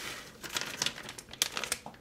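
Plastic bag of shredded cheese crinkling in quick, irregular crackles as it is shaken and squeezed to tip the cheese out.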